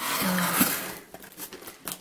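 Paper and newspaper wrapping crinkling as hands dig into a cardboard parcel, loudest in the first second, then fainter rustling with a few light clicks.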